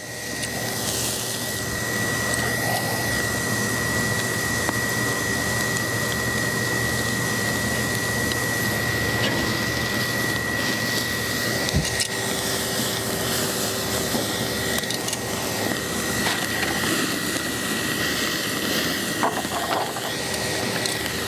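Skirt steak sizzling over an open charcoal fire in a kettle grill, a steady hiss as the rendering fat drips into the coals and flares. One sharp click near the middle.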